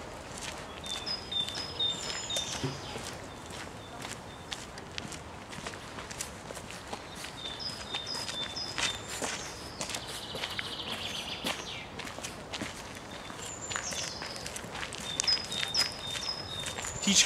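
Footsteps crunching along a dirt forest path, with songbirds singing: groups of short, high whistled notes several times and a buzzy trill about ten seconds in.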